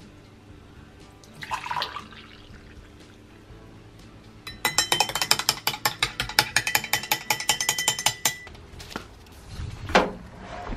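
Coffee poured briefly from a coffee pot into a ceramic mug, then a metal teaspoon stirring it, clinking rapidly against the inside of the mug for about four seconds.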